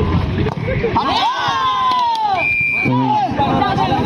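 Spectators and players shouting during a volleyball rally, with one long drawn-out shout. A short, steady referee's whistle blast sounds about two and a half seconds in, signalling the end of the rally.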